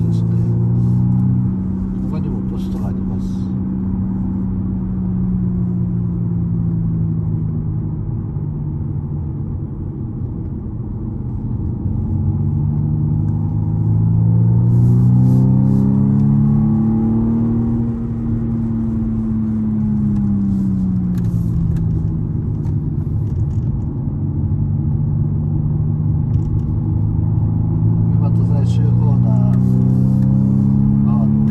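A car's engine heard from inside the cabin at speed on a wet track. Its note falls slowly, rises to a peak about halfway through, drops again a few seconds later, then climbs again near the end as the car accelerates onto the straight.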